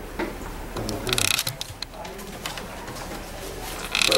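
Faint low voices murmuring in a small room, with a short rustle about a second in and scattered clicks.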